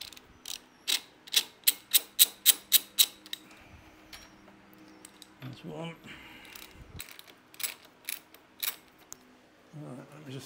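Socket ratchet clicking in quick runs as a 12 mm bolt is undone: about nine clicks in the first three seconds, then four more near the end.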